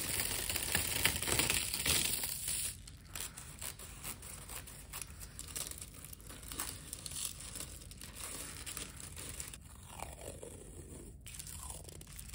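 Pink honeycomb packing paper being stretched open and wrapped around a chunk of amber: paper crinkling and rustling, loudest in the first two to three seconds, then softer handling with small crackles.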